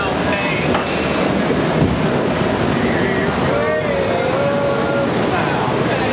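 Steady rushing water of a log flume ride's channel and falls, with faint voices wavering over it.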